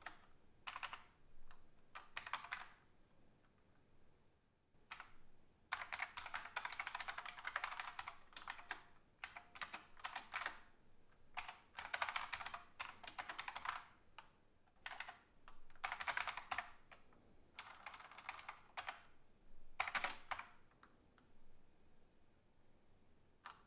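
Computer keyboard being typed on in bursts of rapid keystrokes, with short pauses in between.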